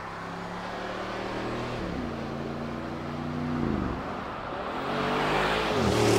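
Bentley Bentayga's 4.0-litre twin-turbo V8 accelerating past. The engine note drops back at gear changes about two, four and six seconds in, and it grows louder as the car nears.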